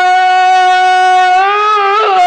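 A male singer holds one long, steady note on "Allah" in an Arabic devotional chant. Near the end the pitch lifts slightly and starts to waver into a melismatic ornament.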